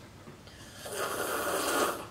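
Loud, drawn-out slurping from a mug of drink, starting about half a second in and growing louder toward the end.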